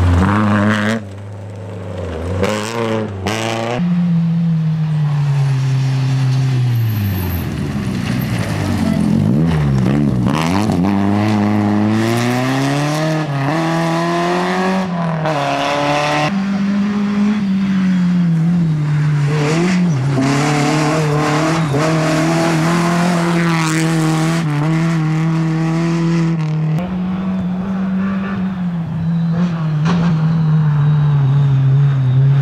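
Peugeot 206 RC rally car's 2.0-litre four-cylinder engine revving hard on gravel. Its pitch climbs and drops repeatedly as it goes through the gears and lifts off, and the sound jumps abruptly a few times between passes.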